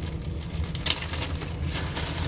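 Small clear plastic bag being handled and crinkling, with a couple of sharper crackles about a second in and near the end.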